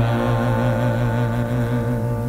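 Music: orchestral accompaniment to a gospel song, holding a steady sustained chord.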